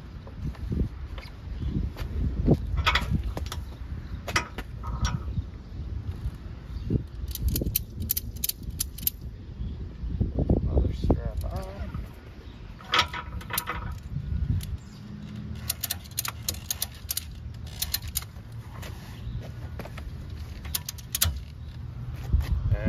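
Wind rumbling on the microphone, with several short bursts of metallic clicking and rattling from ratchet tie-down straps being hooked on and cranked tight on a dirt bike's handlebar.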